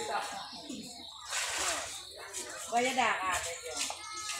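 Several people talking indistinctly, children's voices among them, with no other sound standing out.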